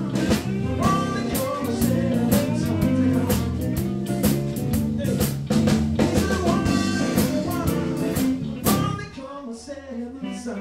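Live blues band playing, with drum kit and guitars and a man singing into a microphone; the music drops back briefly near the end.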